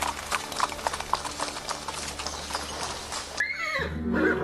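Dubbed sound effect of horse hooves clip-clopping at a walk, in rapid uneven knocks, stopping about three and a half seconds in. A horse whinnies near the end, its call falling in pitch.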